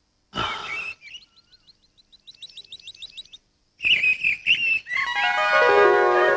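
A short noisy burst, then a bird chirping in a fast run of short high notes. About five seconds in, music with a flute starts and holds long tones.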